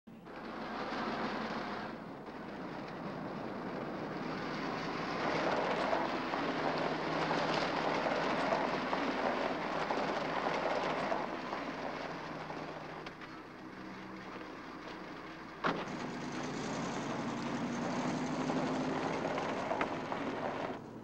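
A car driving up, its engine and tyre noise swelling as it comes close and then easing off. A single sharp knock comes a few seconds before the end, and a faint, slowly rising hum follows it.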